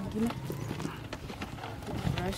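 Light, irregular clicks and knocks from wrapped packs being handled and passed out of a car boot, with people talking in the background.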